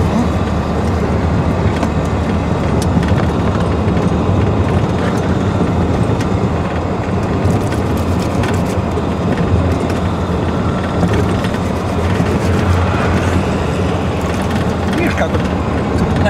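Steady low rumble of engine and road noise heard inside the cabin of a moving GAZelle minibus.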